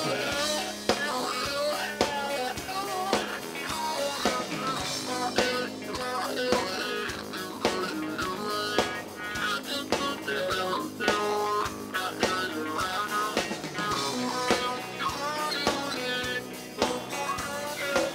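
Live rock band playing: electric guitar run through a talk box, its melody in bending, voice-like lines, over a drum kit.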